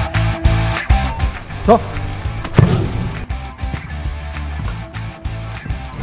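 Background music with a steady bass beat and sharp percussive hits, with a brief spoken word about two seconds in.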